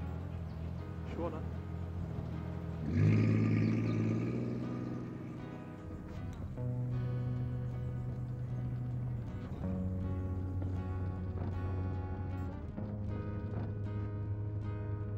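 A car engine catches and runs up loudly about three seconds in, starting now that its ignition leads are back on the distributor cap. Acoustic guitar music then comes in and plays on, its chords changing every few seconds.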